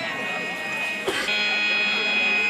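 A steady electronic drone of several held pitches at once, getting louder after a single knock about a second in, with indistinct voices underneath.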